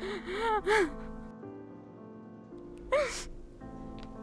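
A woman crying: three quick sobbing gasps in the first second and one more about three seconds in, over soft, sustained background music.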